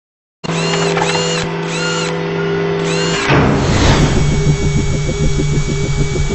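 Produced logo intro sting of music and sound effects: a steady drone with a few rising-and-falling high chirps, then from about three seconds a fast pulsing beat, roughly six pulses a second, with a whoosh at the changeover.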